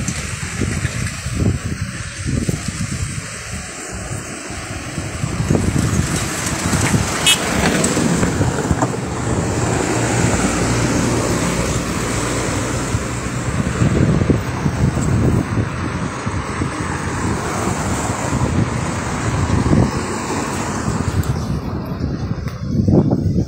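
Car driving along a road: a steady rush of tyre and engine noise with wind buffeting the microphone, growing louder about five seconds in.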